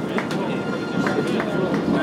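Many men's voices chattering at once among a group of baseball players, with a few sharp hand slaps from high-fives and claps.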